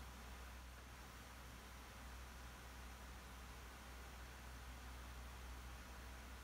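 Near silence: steady room tone, a faint hiss over a low hum.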